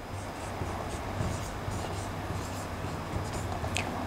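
Dry-erase marker writing on a whiteboard, a run of short strokes.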